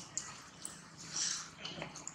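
Long-tailed macaques making short, high calls, the loudest a little past a second in.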